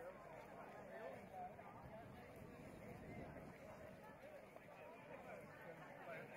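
Faint, indistinct talking of people in the background, barely above near silence.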